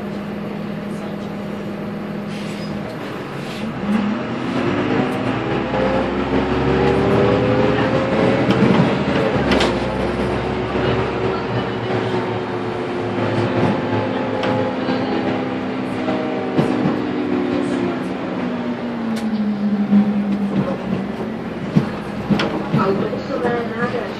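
Diesel engine of a Karosa B951E city bus, heard from inside the cab. It idles steadily, rises in pitch as the bus pulls away about four seconds in, holds while driving, then falls back to idle near the end as the bus slows. Short knocks and rattles come through along the way.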